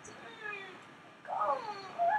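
A young woman's voice making two short, wordless sounds, each gliding down in pitch; the second, about halfway through, is louder and meow-like.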